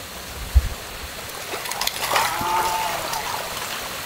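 Water splashing in a fish-farm tank, with fish thrashing at the surface for feed over the steady pour of the tank's inflow pipes. A single low thump comes just over half a second in, and short splashes cluster near the middle.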